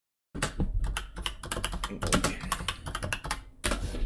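Fast typing on a computer keyboard: a dense run of keystroke clicks starting about a third of a second in, a brief gap, then a short final burst of keys near the end.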